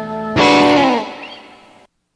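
Electric guitar chord from a live rock band on a cassette recording. A held chord gives way to a fresh chord struck about a third of a second in, which rings and fades with its pitch sagging slightly. Then the recording cuts off abruptly near the end.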